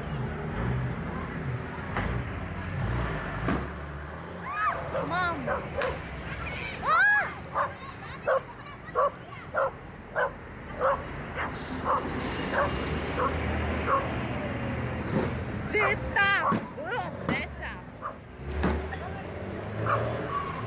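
A dog barking repeatedly, with a run of short barks in the middle, mixed with people's shouting voices over a bus engine's low rumble.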